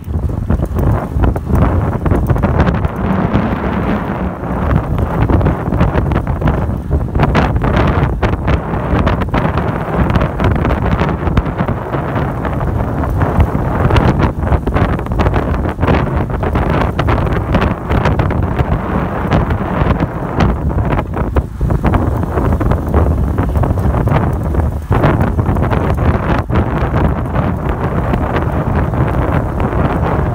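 Wind rushing over the microphone of a camera mounted on a moving road bicycle: a loud, steady rush that flutters in frequent short gusts.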